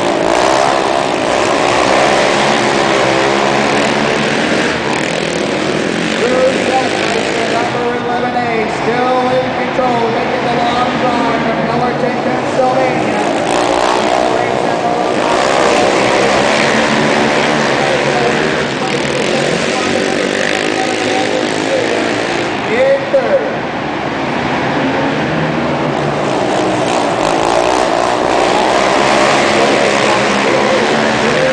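Several racing quad ATV engines running hard in a pack, revving up and down as they go round a dirt flat track, inside a large enclosed arena.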